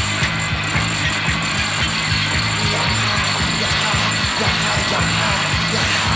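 Industrial rock recording in an instrumental stretch: a fast, even, machine-like clattering rhythm, like a ratchet, over a dense, noisy wash, with no vocals.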